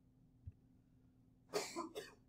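A man coughing, a short double cough about one and a half seconds in, after a faint low thump.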